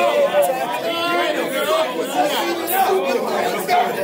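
Several men's voices talking over one another: crowd chatter.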